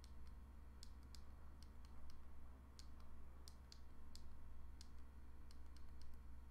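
Faint, irregular clicks, more than a dozen, from the two side buttons of a Ledger Nano S hardware wallet being pressed repeatedly while the PIN code is entered. A steady low hum runs underneath.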